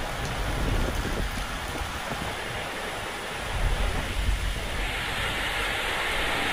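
Heavy rain falling steadily, with wind buffeting the microphone in gusts, strongest a little past the middle.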